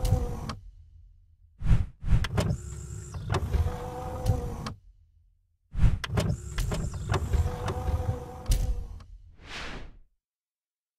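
Mechanical whirring sound effect, like a small electric motor. It comes in three stretches of a few seconds each, separated by dead silence, with a short whoosh near the end.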